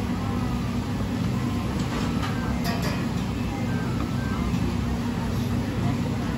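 Kitchen knife halving boiled prawns on a plastic cutting board, a few faint taps of the blade on the board about two to three seconds in, over a steady low kitchen hum and faint music.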